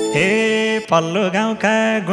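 Male folk singer singing a Nepali dohori line solo and unaccompanied, in long held notes with sliding ornaments. The band's instruments cut off right at the start.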